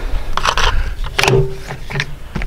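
Scrapes and knocks of a person climbing down through a hatch onto a wooden ladder, in two short scraping bursts after a sharp click at the start.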